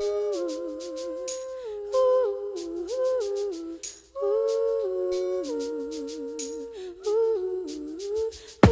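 Wordless humming of a slow melody with wavering pitch, over faint high ticks, in the sparse intro of a 1990s hip hop track.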